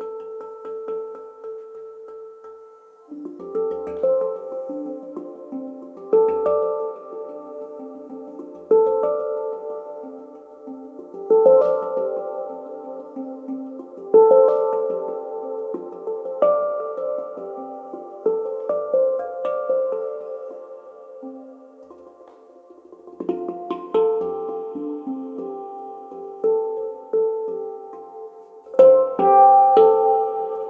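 PanArt Hang played by hand: struck steel notes ring and overlap in a slow, tumbling melodic pattern, with a stronger stroke about every two and a half seconds. For the first three seconds a single held note rings alone before the playing starts.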